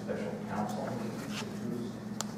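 Faint, indistinct talk in the meeting room over a steady low hum.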